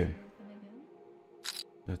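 Mostly speech: a word ending at the start and talk starting again near the end, with faint background sound from the live stream and a short hiss between.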